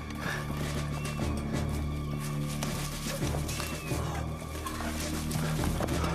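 Background music score built on held low bass notes, with a few short high chirps over it.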